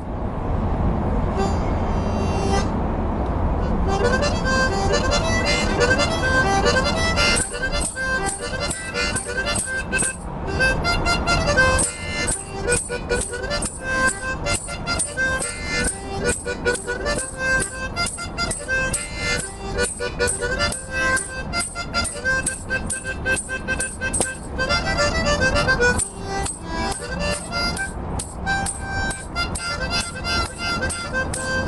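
Solo harmonica played with cupped hands. It starts about four seconds in and runs as a quick, rhythmic run of notes, over a low rumble of background noise that is heard alone at first.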